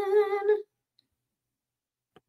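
A woman's voice holding a hummed, drawn-out note on one steady pitch as she hesitates mid-sentence; it stops about half a second in, followed by silence.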